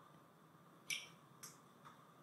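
Near silence with faint room hiss, broken by two faint short clicks, one about a second in and a softer one half a second later.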